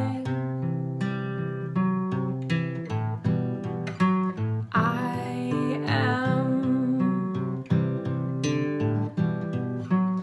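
Gibson CL-40 acoustic guitar playing a steady run of plucked notes, with a soft female voice singing quietly over it around the middle.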